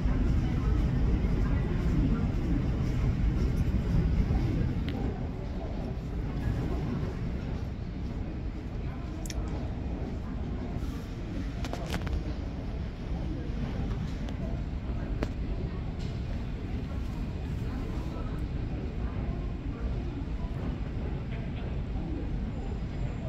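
Airport apron ambience: a steady low rumble, louder for the first four seconds, with faint voices in the background.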